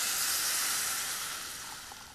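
Water pouring from a metal bottle into a glass bowl of dry rice and pasta: a steady splashing rush that slowly grows quieter in the second half.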